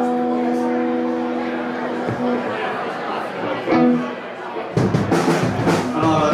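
Electric guitar chord held and ringing out, with a second short chord about four seconds in; near the end the full rock band, drum kit, bass and guitar, starts playing.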